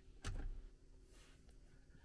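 A soft thump about a quarter of a second in, over a faint low hum, then a faint brief rustle about a second in.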